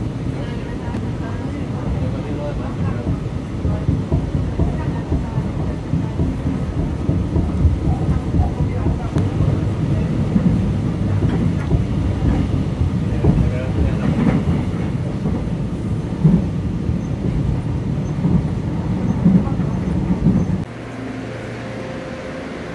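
Electric commuter train running, heard from inside the carriage: a steady low rumble of wheels on the rails with small irregular knocks. Near the end it drops suddenly to a quieter, steady hum.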